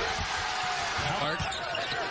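A basketball being dribbled on a hardwood court over the steady noise of an arena crowd, as picked up in a TV broadcast mix.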